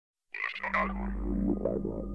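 Opening of an electronic track: a steady low drone under a run of croaking, frog-like calls, starting about a third of a second in.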